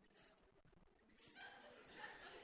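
Near silence: room tone, with a faint, indistinct rise in sound from about halfway in.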